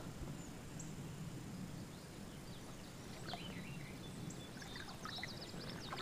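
Faint riverside outdoor ambience: a low, steady background hush with scattered short, high bird chirps, a quick flurry of them about four to five seconds in.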